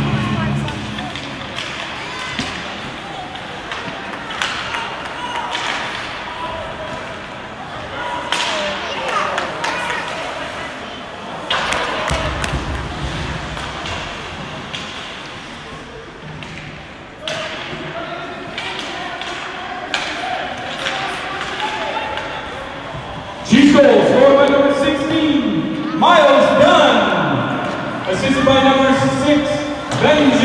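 Ice hockey game sound in an arena: indistinct spectator voices with scattered sharp knocks and thuds from play on the ice, and louder shouting near the end.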